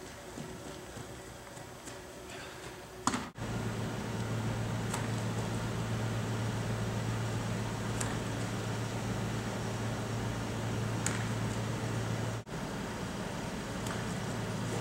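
Steady low hum of air-handling equipment, starting abruptly about three seconds in and broken by a brief cut near the end, with a few faint sharp clicks a few seconds apart.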